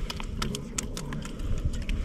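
A quick, irregular string of small clicks and taps from hands handling fishing tackle and a freshly caught small fish on the ice.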